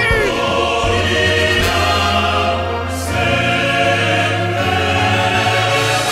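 Musical-theatre choir singing held chords over orchestral accompaniment, the harmony shifting a couple of times.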